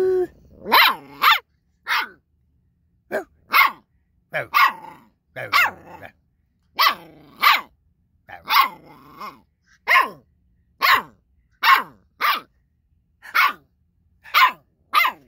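Catahoula Leopard Dog puppy barking at its owner in a run of about eighteen short, high-pitched yaps, many coming in quick pairs with short pauses between them.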